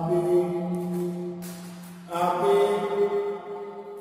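A voice chanting long, level held notes in two phrases of about two seconds each, the second starting about two seconds in.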